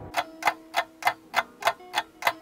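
Ticking clock sound effect, evenly spaced at about three ticks a second, a waiting cue.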